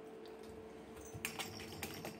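A cat pawing into the holes of a cardboard scratcher toy box with a ball inside, giving a quick run of light clicks and taps in the second half.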